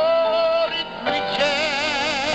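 Christian choir music heard over a shortwave radio broadcast. A voice slides up into a note held for about half a second, then sings on with a wide vibrato from about a second and a half in.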